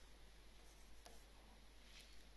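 Near silence, with a few faint taps of a pen on a touchscreen as someone writes and points on it.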